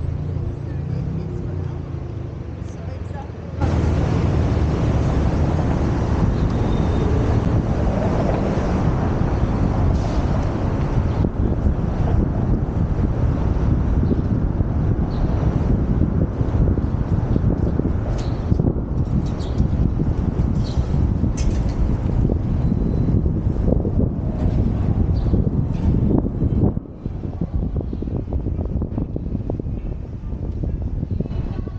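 Wind buffeting a helmet-mounted camera's microphone while cycling, over city traffic noise. The rumble jumps up sharply a few seconds in as the bike gets moving, and stays loud and steady, with a short dip near the end.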